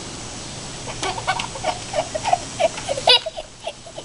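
A small child's wordless voice: a string of short, wavering, high-pitched whines and cries starting about a second in, over a steady low background hum.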